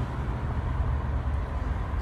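Steady low rumble of running machinery, even and unchanging, with no distinct clicks or beeps.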